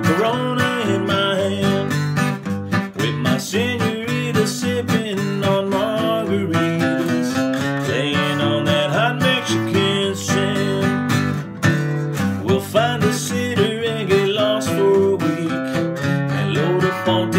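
A man singing a country song to his own strummed acoustic guitar.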